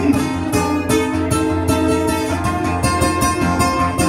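Acoustic guitar strummed in a steady rhythm, about four strokes a second, with no singing.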